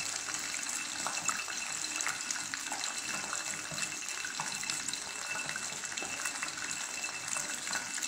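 Close-miked chewing of a crunchy centipede: scattered small crackles over a steady hiss.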